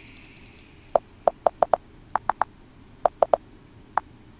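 Computer keyboard keys clicking as a word is typed: about a dozen sharp keystrokes in quick little groups, starting about a second in.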